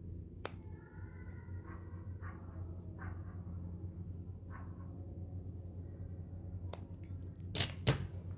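Scissors snipping through rolled craft-paper sticks: a sharp snip about half a second in, then three more near the end, over a low steady hum.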